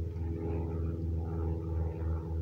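A steady low engine drone, an even hum with a slight pulsing.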